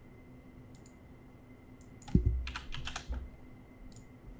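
Typing on a computer keyboard: a couple of faint clicks, then a short run of keystrokes a little after halfway, entering a number into a form field.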